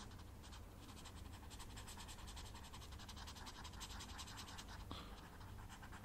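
Faint, rapid scratchy strokes of a drawing tool sketching on a spiral sketchbook page, close-miked, going on throughout.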